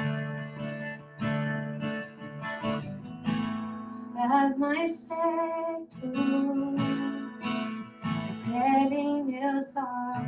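A woman singing a worship song, accompanying herself on a strummed acoustic guitar.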